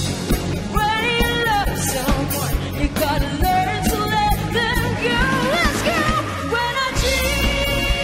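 Live band performance: a female lead vocalist singing a pop ballad chorus over electric guitar and drums, with a steady drum beat.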